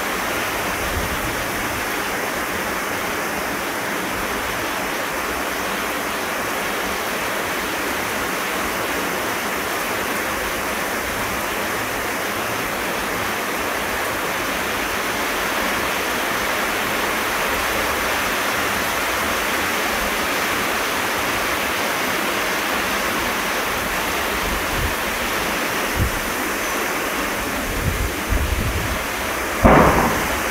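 Heavy monsoon rain pouring steadily onto dense foliage, an even rushing hiss. Near the end, low bumps of wind gusting on the microphone break in.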